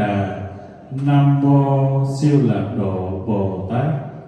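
A Buddhist monk chanting in a man's voice through a microphone, holding long steady notes with short breaks between phrases.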